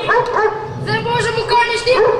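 Children's voices imitating a dog's barking: two short high calls, then a longer drawn-out one from about a second in.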